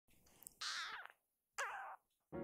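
Very young tabby-and-white kitten meowing twice, two short high-pitched cries about a second apart, each falling in pitch.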